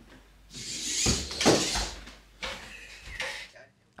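Servo-driven 3D-printed hexapod robot walking on a wooden floor: irregular knocks and clatter with a hissy whirr, loudest about a second in and fading near the end, mixed with indistinct voices.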